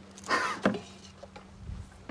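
Cattle feed poured from a plastic bucket into a feed trough: a short rush of feed, then a single knock of the bucket.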